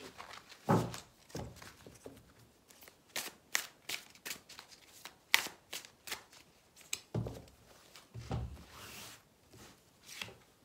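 A tarot deck being shuffled and handled in the hands over a cloth-covered table: a run of sharp card snaps and flicks, the loudest about halfway through, with a few dull thuds near the end as the deck is squared and handled.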